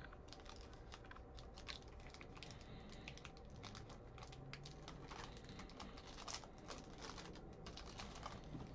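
Faint, irregular clicking and crinkling of hands handling trading cards and tearing open a foil Bowman card pack.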